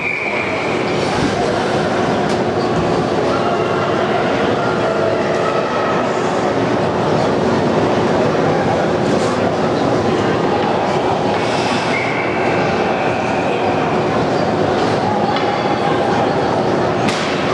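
Ice-rink din during a youth hockey game: a steady crowd murmur and arena hum, with a few faint clicks. A short, high whistle sounds right at the start, as play stops, and another comes about twelve seconds in.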